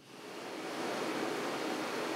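A steady hiss of room noise that swells in over the first half second and then holds evenly.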